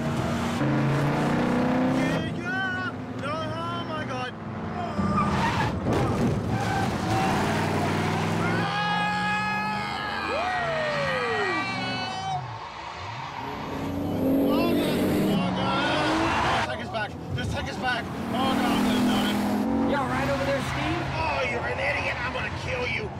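Chevrolet Camaro driven hard: the engine revving up and down and the tyres squealing, with a man shouting and screaming in panic over it.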